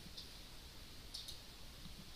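Faint computer mouse clicks: a few single clicks and a quick pair just after a second in, as digits are tapped on an emulator's on-screen keypad.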